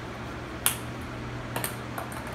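Lasko wind machine fan running with a steady low hum. A sharp click comes about two-thirds of a second in and a few lighter clicks near the end: ping pong balls tapping against the fan's plastic housing.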